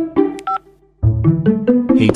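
Phone keypad touch-tone beeps as a number is dialled, heard over background music. One beep comes about half a second in, and the music drops out briefly before returning at about one second.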